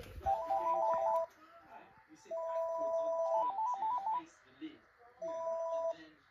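Panasonic cordless phone handset playing an electronic ringtone for an incoming call on its Bluetooth-linked cellular line. It plays three bursts of a bleeping two-note stepped melody, the middle burst the longest, with short pauses between them.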